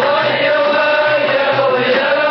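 Live band music: male voices singing together, holding one long note over a steady beat of about two a second.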